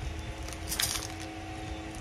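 Brief rustle of plastic packaging being handled about a second in, over a steady low background hum.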